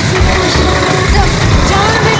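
Steady low rumble of the engine and road noise of a moving vehicle, heard from inside its passenger compartment, with faint voices and music over it.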